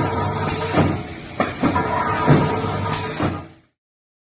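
BLISS 125-ton flywheel mechanical punch press running: a steady motor and flywheel hum, with five sharp clunks spaced unevenly through it. The sound cuts off suddenly near the end.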